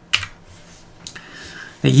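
A few faint, sharp clicks and a short soft rustle in a pause between speech. A man's brief "ne" comes near the end.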